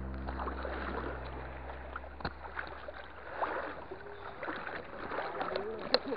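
Shallow seawater sloshing and lapping around a wader, with faint voices and a few light knocks; low notes of background music linger underneath for the first few seconds.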